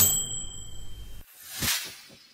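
A bright bell-like ding sound effect that rings for about a second and is cut off abruptly, followed near the end by a brief swelling and fading rush of noise.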